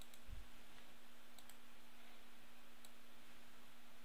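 A few faint computer mouse clicks, two close together about a second and a half in, over a steady low hum and hiss.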